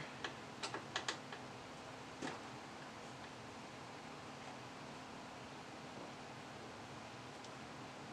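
A handful of light clicks and ticks in the first couple of seconds as a screwdriver works the CPU heatsink's mounting screws loose. Under them runs the steady faint hum of the computer running under full load.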